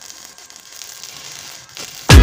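Electric arc welding on steel bars: the arc crackling and sizzling steadily, fairly quiet.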